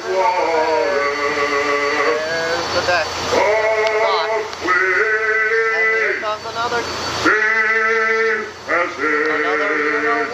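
A riverboat leadsman's drawn-out sung depth calls, a man's voice singing out the soundings in about five long held calls. Each call lasts a second or two, with short breaks between them.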